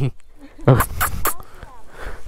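A dog sniffing right at the microphone: a bump about two-thirds of a second in, then three short, sharp sniffs.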